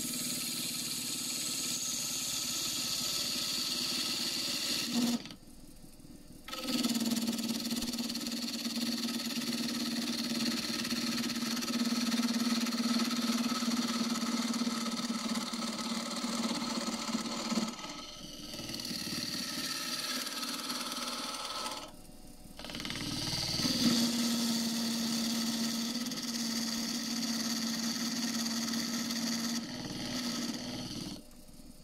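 Wood lathe spinning a pussy willow blank while a turning tool cuts its end face: a steady low hum with the hiss and scrape of the tool peeling shavings. The sound drops out briefly twice, about five seconds in and again a little past twenty seconds.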